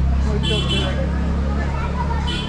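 Background voices talking over a steady low machine hum.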